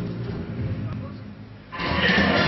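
Ice dance program music over the arena sound system, dying away and going quiet, then a new, much louder section of music cutting in abruptly near the end.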